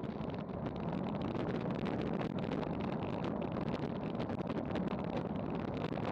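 Wind buffeting the microphone of a bike-mounted action camera descending at about 30 mph: a steady rush of noise with constant rapid crackling.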